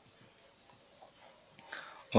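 Very quiet: faint marker-pen strokes on paper, with a few small ticks, during handwriting.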